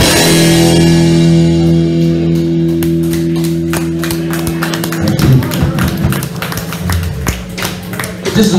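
A live rock band's final chord on electric guitars and bass rings out steadily and dies away about five seconds in. Scattered short, sharp taps are heard through the decay and after it.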